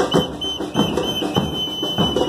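A whistle blown in four short blasts and then one long held blast, over a murga's bombos con platillo (bass drums with cymbals mounted on top) beating a steady rhythm.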